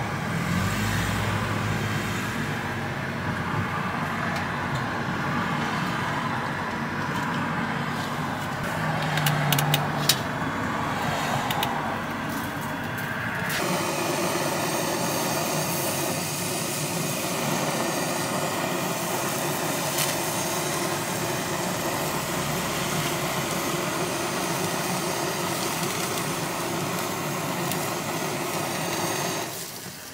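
Steady background noise with a few light clicks about nine to ten seconds in; then, from about halfway, a handheld gas torch runs with an even hiss while it caramelizes the sugar topping of a crème brûlée crepe, stopping just before the end.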